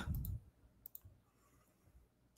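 Near silence with a couple of faint, sharp clicks about a second in, after a spoken word trails off at the start.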